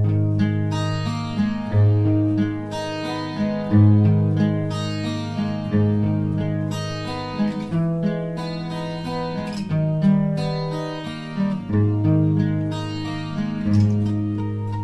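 Acoustic guitar playing a slow passage of plucked chords over deep bass notes that change about every two seconds, recorded through a webcam microphone.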